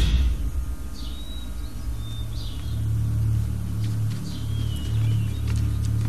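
A low, steady rumbling drone from the film's soundtrack, swelling slightly in the middle, with faint short bird chirps over it four times.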